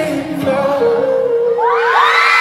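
Live pop concert heard from the audience in a large hall: a singer holds one long note at a steady pitch, and from about a second and a half in a wave of high screaming from the crowd rises over it.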